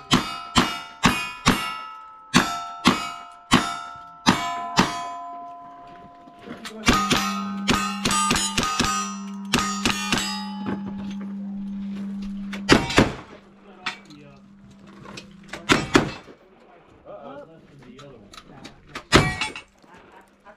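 Cowboy action shooting stage: a quick string of about ten gunshots, each followed by the ring of a struck steel target, then a faster run of rifle shots. After that come heavier shotgun shots, two close pairs and then a single one. All hits, no misses.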